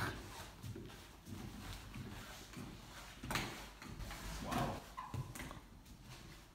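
Faint, irregular knocks and scuffs of a man climbing a thick hanging rope hand over hand, the rope and his body knocking as he pulls up.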